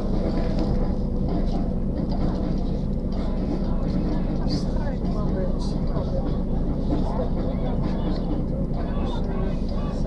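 Steady low hum of a vehicle's engine heard from inside the vehicle, with indistinct voices murmuring over it.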